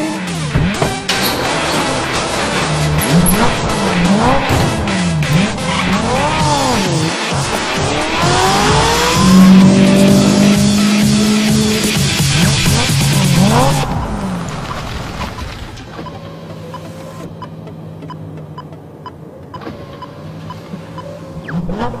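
Ferrari sports car engine revving up and down over and over, the revs peaking in a loud held note about halfway through. For the last third it runs quieter and steadier.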